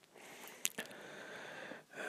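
Quiet mouth sounds from a close-miked whispering man: a sharp lip or tongue click a little past a third of the way in, then a soft breath until near the end.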